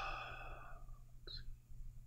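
A man's drawn-out "uh" trailing off into a soft sigh-like breath, then quiet room tone with one faint click a little past halfway.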